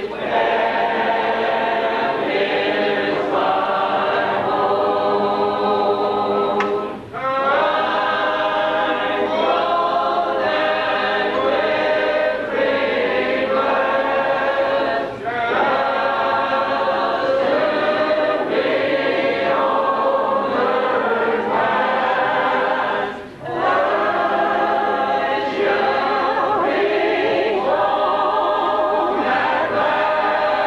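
Church congregation singing a hymn a cappella, many voices together in harmony. The singing pauses briefly between lines about every eight seconds.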